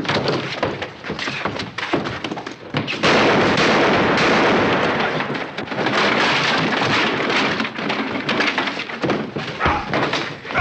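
Sound effects of a brawl: a run of thumps and knocks, then from about three seconds in a long, loud stretch of crashing noise that tails off near the end.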